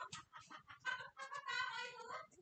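Background music mixed with voices, at a moderate level.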